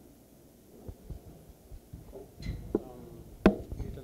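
Handling noise from a handheld microphone: scattered low thumps and a few sharp knocks, the loudest about three and a half seconds in.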